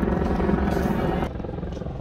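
Background chatter of a crowd of people walking, over a steady low rumble; it drops in level a little after halfway.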